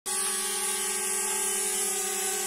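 Small quadcopter drone hovering, its propellers giving a steady buzzing whine at one constant pitch.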